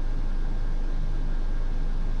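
Steady low hum with a faint hiss above it, unchanging throughout.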